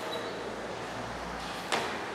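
Faint background hiss with a low rumble, and one short, sharp smack about three-quarters of the way through, from martial artists moving through a Bajiquan form on a tiled floor.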